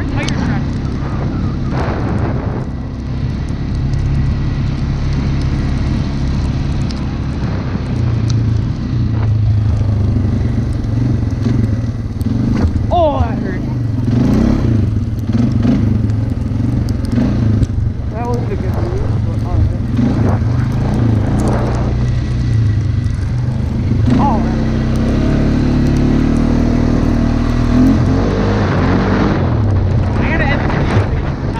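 ATV (four-wheeler) engine running under load while being ridden, its revs rising and falling several times with the throttle.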